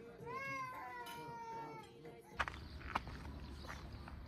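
A single drawn-out animal call that rises quickly, then falls slowly over about a second and a half. Two sharp knocks follow about half a second apart.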